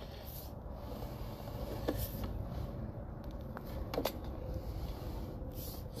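Sewer inspection camera's push cable being pulled back by hand onto its reel: a steady low rumble with a few faint clicks, about two and four seconds in.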